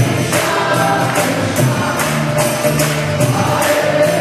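Kirtan: a group singing a devotional chant together, with steady held notes under the voices and small metal hand cymbals (kartals) striking a steady beat about twice a second.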